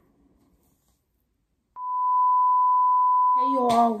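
A single steady electronic beep tone, held for about two seconds, starting a little under halfway in and cutting off suddenly near the end; a woman's voice starts just before it stops.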